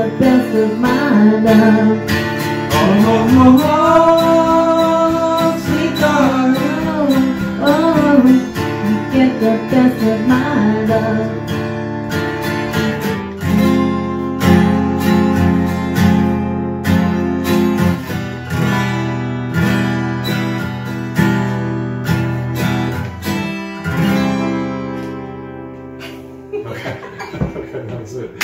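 Strummed acoustic guitar with a voice holding wordless sung notes for about the first half. After that the guitar carries on alone with steady chords that grow quieter near the end, closing out the song.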